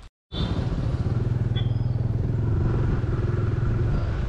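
TVS Apache 160's single-cylinder engine running steadily as the motorcycle is ridden, heard from on the bike. The sound cuts in a moment after the start, following a brief dropout.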